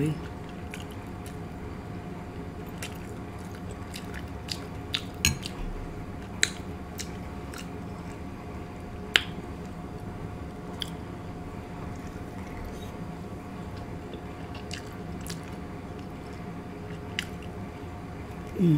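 Close-miked eating sounds from someone chewing fried fish and shrimp in butter sauce: scattered sharp clicks and wet mouth noises at irregular intervals, the sharpest about nine seconds in. A faint steady hum runs underneath.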